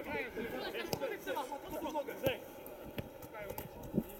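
Players' voices calling and shouting across a football pitch, heard at a distance, mostly in the first half. A few short knocks of the ball being kicked sound between the calls.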